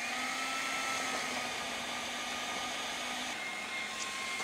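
Food processor motor running steadily with a whine, its blade cutting cold diced butter into flour for shortcrust pastry; the whine shifts slightly in pitch near the end.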